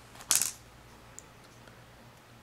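A short scraping rustle as a closed folding knife is handled and drawn from its zippered leather case, then quiet handling with one faint tick about a second in.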